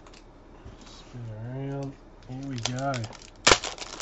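A man's voice making wordless sounds, then the crackle of a foil trading-card pack wrapper being torn open, with one sharp tear near the end as the loudest sound.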